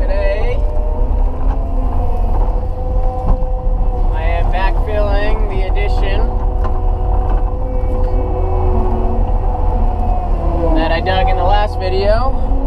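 A Caterpillar 289D compact track loader working, heard from inside its cab. The engine keeps up a steady low drone under several held whining tones while the lift arms raise and dump a bucket of fill.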